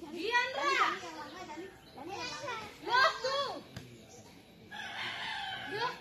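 Children's voices calling out in several short bursts, then one longer, steadier voiced sound near the end.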